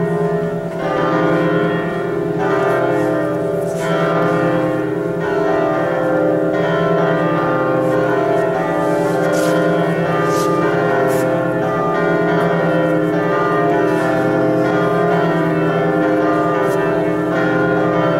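Liturgical church music: sustained chords with steady held notes that change every second or two.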